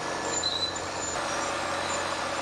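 Crawler bulldozer's diesel engine running steadily as the machine works, an even, unbroken mechanical noise.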